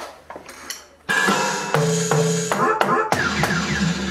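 Roland HD-1 electronic drum kit played on an industrial-style preset: after a few light taps, a loud beat starts about a second in, with sharp drum hits and held, pitched electronic tones.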